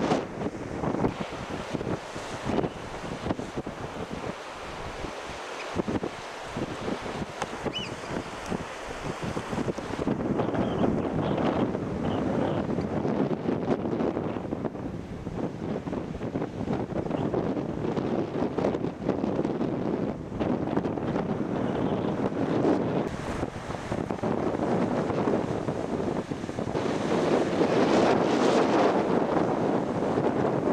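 Wind buffeting the microphone over the wash of surf breaking on rocks, rising and falling in gusts and growing louder near the end.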